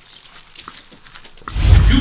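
A loud, deep rumbling hit comes in about one and a half seconds in and carries on, after a quieter stretch of faint clicks.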